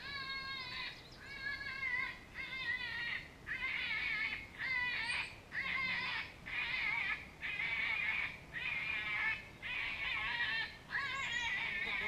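Predator call sounding a wavering, squealing distress cry over and over, about one cry a second, as used to lure coyotes.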